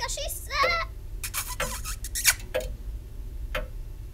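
A voice speaks briefly just under a second in, followed by several short, sharp clicks or smacks over a steady low hum.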